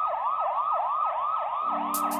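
Police siren sound effect opening the reggae track, a fast yelp rising and falling about four times a second with a thin, band-limited tone. Near the end a low steady synth tone comes in under it.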